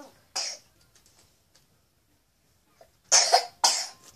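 A young child coughing close into a toy microphone: one short cough just after the start, then two loud coughs about half a second apart near the end.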